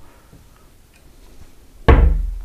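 A chipboard dresser door on an ordinary hinge with no soft-close damper bangs shut near the end, a single loud thud with a low rumbling decay after it.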